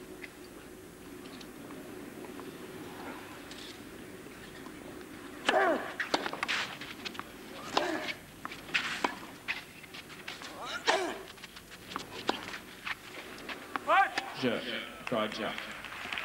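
A clay-court tennis point: after a quiet lull, sharp racket strikes on the ball about a second apart, mixed with calls and voices from the crowd that grow busier near the end as the point finishes.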